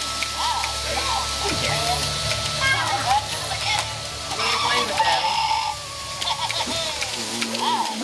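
Young children's and a baby's voices: short high squeals and babbling, with other voices in the room.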